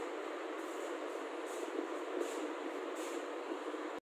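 Steady, even background noise of the room, a continuous hiss with no speech, and a few faint, short high-pitched sounds in the second half.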